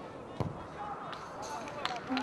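A football kicked on the pitch, one sharp thud about half a second in, with players' shouts around it and another short sharp knock near the end.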